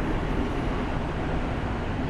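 Steady rumble and rush of a passenger train running through an underground station, loud through an open carriage window.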